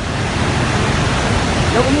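Muddy floodwater from a dam break rushing past in a torrent: a loud, steady rush of water. A man's voice calls out near the end.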